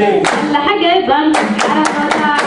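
Group singing a Djiboutian folk dance song, accompanied by sharp hand claps. The claps come in a loose rhythm, with a cluster of them about a second and a half in.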